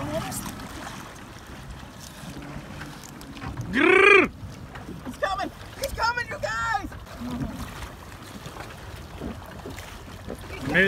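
People shouting and whooping on the water: one loud drawn-out whoop about four seconds in, then several shorter shouts. Under it runs a low steady hum, loudest in the first few seconds.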